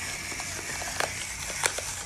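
Electric pepper mill grinding peppercorns: a steady whirr with scattered sharp crackles of cracking pepper.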